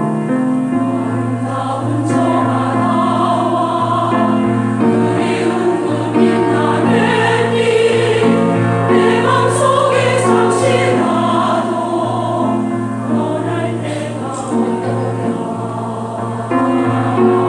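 Mixed choir of men's and women's voices singing with piano accompaniment. The piano plays alone at first, and the voices come in shortly after the start.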